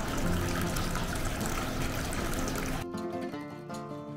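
A steady rush of flowing water, with quiet acoustic guitar music beneath it. Just under three seconds in the water sound cuts off suddenly, leaving only the plucked guitar music.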